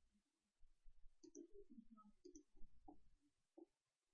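Near silence with faint computer mouse clicks: one press-and-release about a second in and another just past two seconds.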